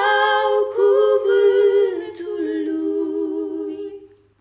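Two women's voices singing unaccompanied in two-part harmony, moving through a few sustained notes and settling on a long held final chord that fades out at the very end.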